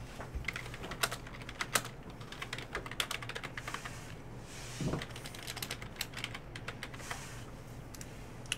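Typing on a computer keyboard: irregular runs of sharp key clicks.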